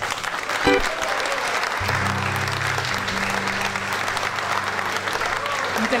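Audience applauding steadily, with a few low held musical notes sounding underneath from about two seconds in.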